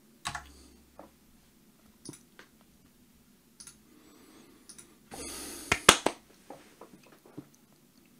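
Irregular clicks from a computer keyboard at the desk, spaced out, with a brief rustle about five seconds in followed by a louder cluster of clicks.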